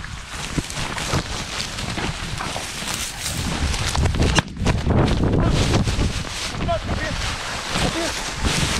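Wind buffeting the microphone of a GoPro harnessed on a German shorthaired pointer, with dry grass swishing and scraping against the camera as the dog pushes through tall cover.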